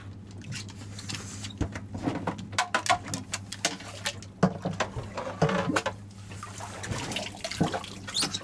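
Water splashing and sloshing in a boat's bait well as a live goggle-eye is caught and lifted out, with irregular splashes and knocks throughout over a steady low hum.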